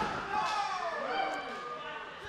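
Wrestling crowd calling out during a referee's pin count, several overlapping voices gliding down in pitch.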